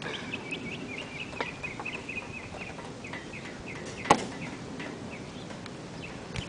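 A bird calling in a rapid run of short high chirps for the first three seconds or so, then a single sharp click about four seconds in.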